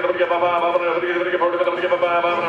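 Auctioneer's rapid bid-calling chant, a fast sing-song run of syllables held on a nearly steady pitch.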